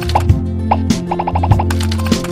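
Outro jingle music with a steady bass line, a beat of percussive hits, and a quick run of short high notes about a second in.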